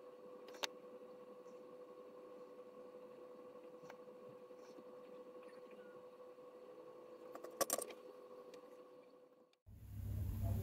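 Near silence on a muted track: a faint steady hum with a few soft clicks, dropping to dead silence near the end.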